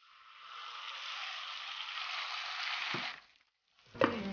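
Ground gongura (sorrel leaf) paste poured into hot oil and tempering in a kadai, sizzling. The sizzle builds over the first second, holds steady, then stops abruptly a little after three seconds, with a soft low knock just before.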